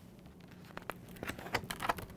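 A large semicircular picture-book page being turned by hand: a faint rustle, then a few quick papery scrapes and taps in the second half as the page flips over.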